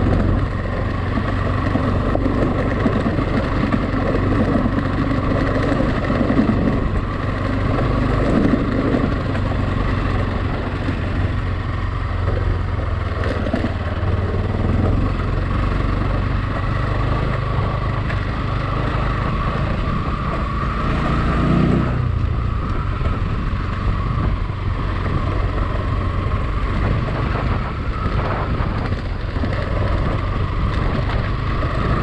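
Motorcycle engine running steadily as the bike is ridden along a rough dirt road. About twenty-one seconds in, the engine note climbs for a moment and then drops suddenly.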